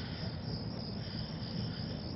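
Crickets chirping steadily in the background.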